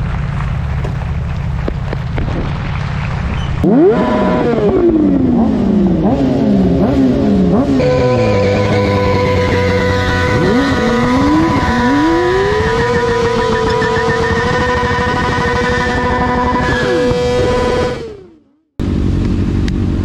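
Motorcycle engines: a low rumble at first, then from about four seconds in, revving with repeated falls in pitch. They settle into a high, steady note with a second engine wavering below it, then fade out near the end.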